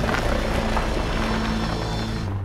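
Truck engine sound effect running steadily, a dense rumbling noise laid over background music, for a toy dump truck driving off.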